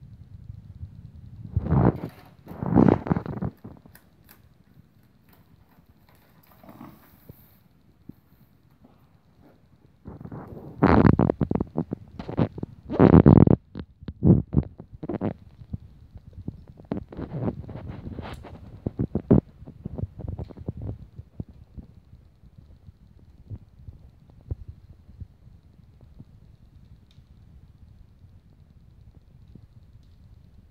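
Small plastic Lego pieces clicking and rattling as they are handled and fitted together, with bursts of rustling and knocks, loudest about 11 to 14 seconds in, and quieter stretches between.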